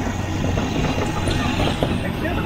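Motorcycle engine of a tricycle taxi running, a steady low drone heard from inside the sidecar.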